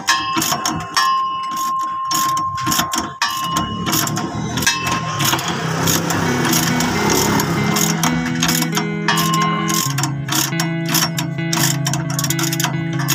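Rapid clicking of a ratcheting wrench turning the nut on a leaf spring hanger bolt. Background music comes in about halfway through and carries on over the clicks.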